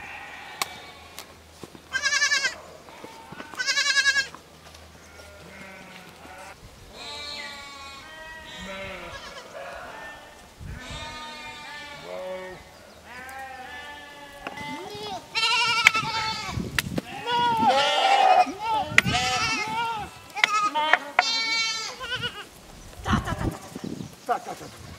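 A flock of sheep bleating: two loud quavering bleats about two and four seconds in, then many overlapping bleats that grow louder in the second half.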